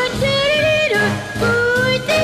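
Swing jazz music: a lead melody of held notes that slide up and down between pitches, over a steady rhythm section.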